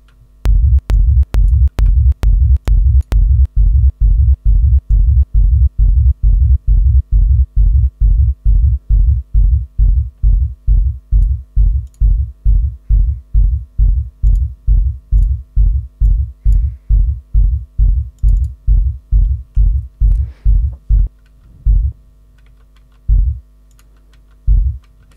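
A techno kick drum played back on its own through a DAW, repeating about twice a second as a deep low thump, the first few hits topped with a sharp click. The soloed kick is being checked for an unwanted distortion. Near the end the loop stops, leaving two lone hits.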